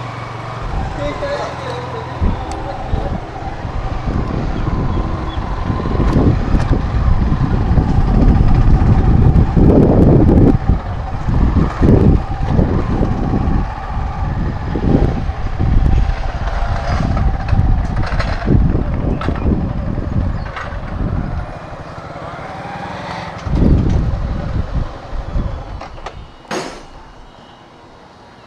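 Yamaha MT-15 motorcycle being ridden, with strong wind buffeting on the microphone over the engine and road noise; the gusts ease off near the end as the bike slows.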